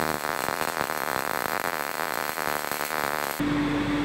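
MIG-MAG welding arc laying a short bead on steel, a steady rapid crackle with sparks. It stops abruptly near the end, and a steady hum takes over.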